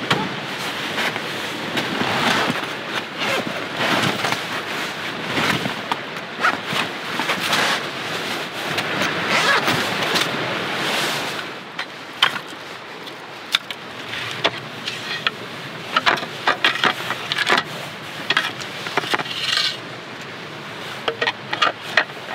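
Rustling and scraping of a fabric camp cot being handled and shifted on a ground sheet. From about halfway on, a series of sharp wooden clacks and knocks as pieces of wood are handled and fitted together.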